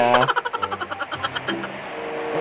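A motor vehicle engine running steadily at a low level in the background.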